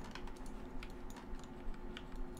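Quick, irregular clicking of computer keyboard keys and mouse buttons, over a faint steady hum.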